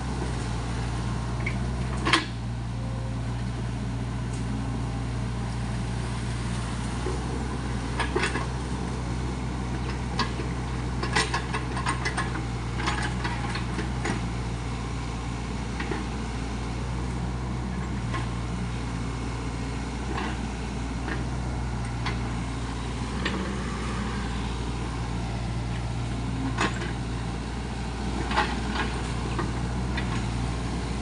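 SANY SY55C mini excavator's diesel engine running steadily as it digs mud, with scattered short sharp knocks and clanks from the working machine.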